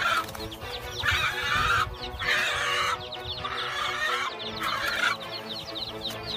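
A chicken squawking repeatedly while a bird of prey attacks it, one call about every second, over background music with long held notes.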